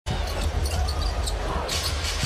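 Basketball being dribbled on a hardwood arena court over steady crowd noise.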